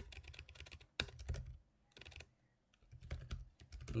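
Typing on a computer keyboard: quick runs of keystrokes, broken by two short pauses in the middle.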